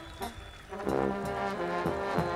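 Balkan Roma brass band playing live, trumpets and flugelhorns with lower horns and regular drum hits. The band thins to a brief lull at the start and comes back in full a little under a second in.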